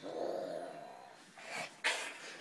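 A young child growling like a dinosaur, a throaty growl that fades over about a second. Near the end there is a short, sharp, loud burst.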